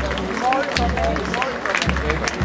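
Spectators talking close by over the tramp of a marching column of Carabinieri, with many short footfall clicks and a low thud about once a second.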